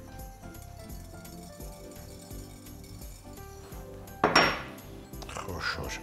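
Background music, with a brief loud clatter in a frying pan about four seconds in, as dry ingredients are poured into it.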